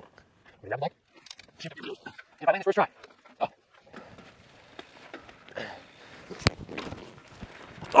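Two short voice-like calls, then a mountain bike rolling faintly over a dirt trail, with one sharp knock about six and a half seconds in.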